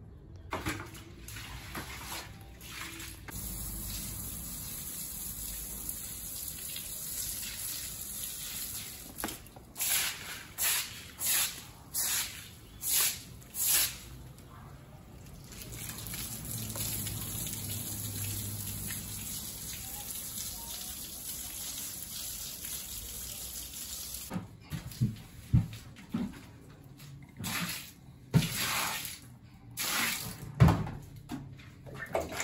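Water from a garden hose spraying onto a wet concrete floor as a steady rush. Around ten seconds in there is a run of about six short, loud swishes. Sharp knocks and clatters come in the last few seconds.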